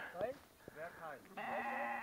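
Sheep bleating in a flock: a few faint short calls, then a longer, steadier bleat starting about two-thirds of the way in.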